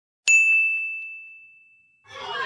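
A single bright bell-like ding sound effect, struck about a quarter second in and ringing out, fading away over about a second and a half.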